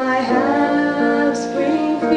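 A woman singing a slow jazz ballad with keyboard accompaniment; her voice glides between notes near the start over sustained chords.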